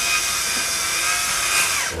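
Cordless drill-driver running in a steady high whine, then winding down and stopping near the end. It is being used to screw a rubber mat onto a wooden board.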